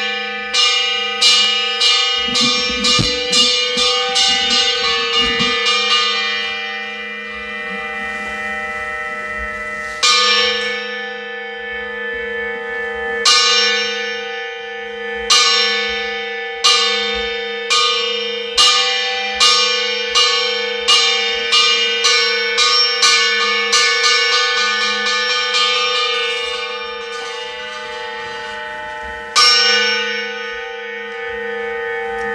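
Church bells struck again and again, each stroke ringing on in long overlapping tones. The strokes come in runs that quicken to about two a second, with pauses of a few seconds where the ringing dies away before the striking starts again.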